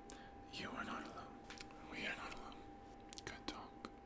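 A man whispering a few soft words, with several sharp mouth clicks, over a faint steady hum.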